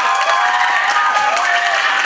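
A crowd of students applauding and cheering, with many high voices shouting over the clapping. The applause is a show-of-hands style vote for the act just named.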